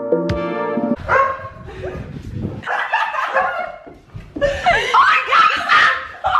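Guitar music that cuts off about a second in, followed by laughter and high, wavering squeals.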